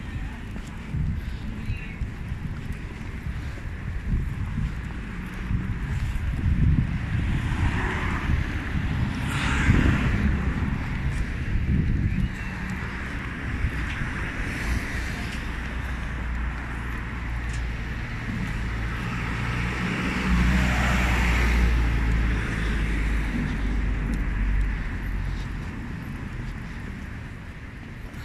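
City street traffic heard while walking along the footpath, with wind noise on the microphone. Vehicles swell past about ten seconds in and again near the end, and a steady low engine hum runs through the second half.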